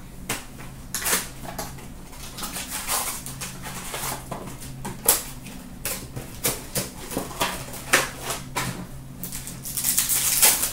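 Foil hockey card pack wrappers crinkling and rustling in the hands, with irregular sharp crackles as packs are pulled from the box and torn open.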